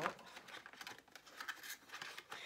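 Cardboard product box being handled and opened: soft, irregular scraping, rustling and small taps of fingers on card.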